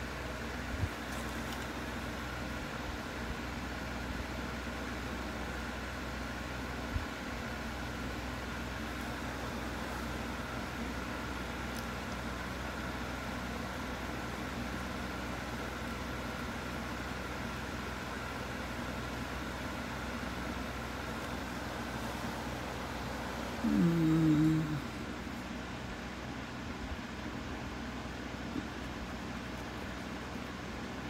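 Steady low hum of room tone with a few faint ticks. About three quarters of the way through, one short low voice-like sound falls in pitch.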